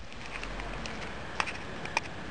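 Teeth biting on the hard shell of a closed pistachio: two small sharp clicks over a steady background noise, the shell being one that won't open even with the teeth.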